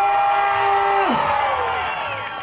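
A singer's voice over a PA system holding one long note, which drops in pitch and falls away about a second in, with crowd noise underneath.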